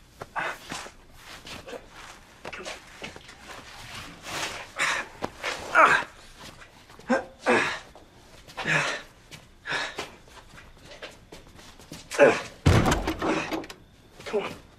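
Grunts, heavy breaths and scuffling as a man hauls another man's weight along, with bumps and knocks. A heavy slam or thud, the loudest sound, comes near the end.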